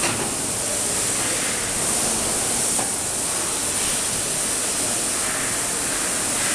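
A loud, steady, even hiss with no rhythm or pitch, brightest in the high treble, with one faint click about three seconds in.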